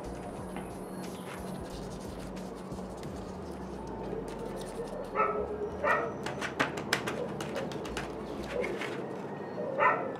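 Background animal calls: a few short calls about halfway through and again near the end, over a steady low hum. Between them comes a run of light clicks as a plastic plant pot is handled on a metal dish.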